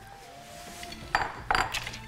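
Wooden spoon knocking and scraping against the plastic bowl of a food processor, twice in quick succession a little after a second in, as minced meat is pushed off into the bowl.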